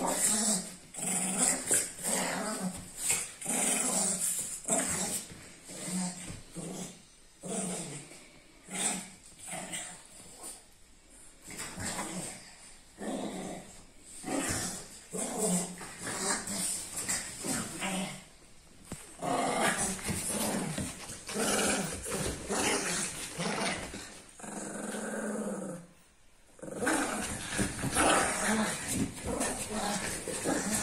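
A Shih Tzu and a French bulldog growling at each other as they play-fight, in irregular bursts that run on almost without a break, with a brief lull near the end.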